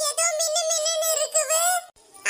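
A very high-pitched, pitch-shifted cartoon voice talking continuously, breaking off just before the end.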